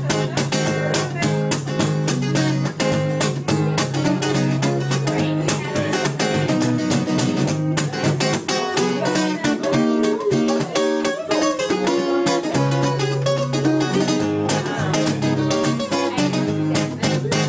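Acoustic guitar strummed in a steady, even rhythm: an instrumental passage with no singing.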